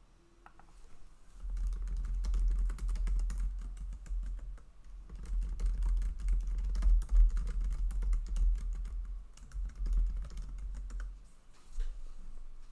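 Fast, irregular typing on a computer keyboard, picked up by a desk microphone. It starts about a second and a half in, pauses briefly near the middle and stops shortly before the end. A low thudding lies under the key clicks.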